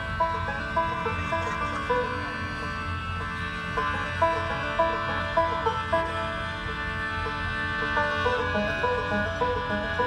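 Acoustic bluegrass-style string band playing an instrumental passage live through a PA: banjo, mandolin, guitar, fiddle and upright bass, with a quick picked melody of short notes over steady held tones.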